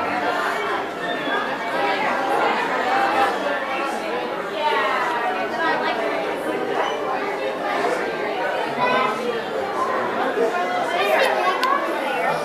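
Background crowd chatter: many people talking at once, overlapping, with no single voice standing out.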